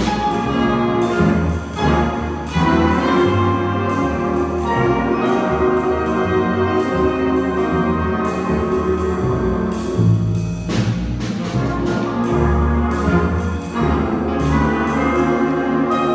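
A student jazz big band playing: saxophones, trumpets and trombones over upright bass, piano and drum kit, with frequent cymbal strokes.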